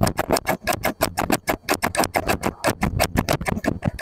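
Scissors snipping over and over in a rapid, even run of crisp clicks, several a second.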